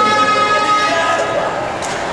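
Chatter of a crowd walking together, with no clear words. One long held pitched sound, such as a drawn-out shout or a horn, stands out over the first second or so and then fades.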